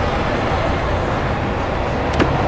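Steady arcade background din: an even wash of noise from the game hall with a low hum underneath, with no distinct clicks or strikes standing out.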